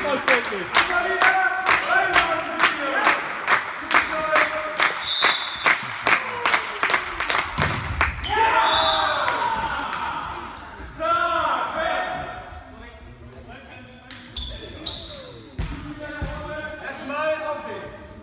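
Spectators clapping in a steady rhythm, about three claps a second, with voices chanting along; the clapping stops about eight seconds in. Shouts and calls ring out in the large hall after that, with a few scattered knocks.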